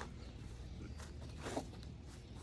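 Faint scuffs of sneakers shifting on grass as a man steps back into a push-up position, a few short ones spread over two seconds, over a low steady background rumble.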